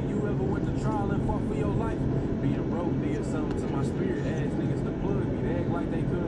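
Indistinct men's voices talking and calling out over a steady low background rumble.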